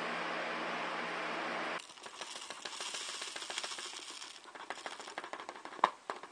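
A steady hiss with a low hum for about the first two seconds, which cuts off. Then granular activated carbon pours into a clear plastic turkey-baster tube: a dense patter of tiny clicks that thins out toward the end, followed by one sharp knock just before the end.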